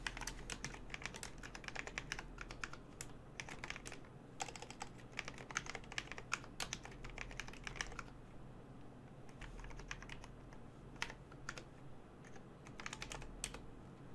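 Computer keyboard typing, faint, in quick runs of keystrokes, pausing for about two seconds a little past halfway before a last short run.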